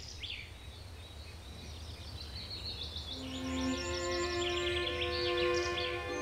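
Birds chirping in quick, repeated high notes. About three seconds in, orchestral violins and flutes come in with long held notes, growing louder.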